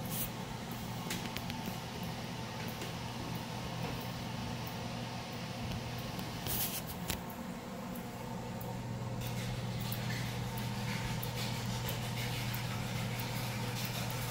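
Steady low hum in a small room, with a few faint clicks about halfway through.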